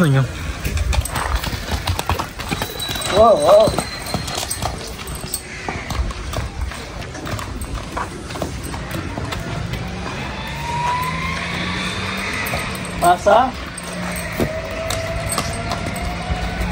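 A horse's hooves stepping on a packed dirt yard as it is led at a walk, a scatter of soft footfalls.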